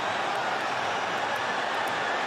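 Stadium crowd cheering just after a goal: a steady, even wash of crowd noise.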